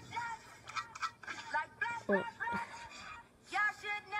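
Voices playing back through a phone's small speaker from a short video clip. Near the end a held sung note with music comes in.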